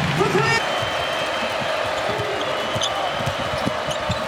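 A basketball being dribbled on a hardwood court, a run of low bounces, over steady arena crowd noise.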